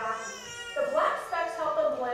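Indistinct voices talking, with no words that can be made out.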